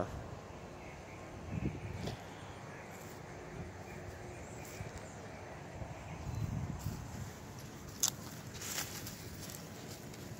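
Quiet outdoor ambience with a few soft footsteps on mulch-covered garden ground, and two brief sharp clicks about eight seconds in.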